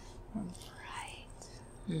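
Faint whispered speech, with a short soft 'mm' about half a second in, and a spoken 'mm-hmm' beginning right at the end.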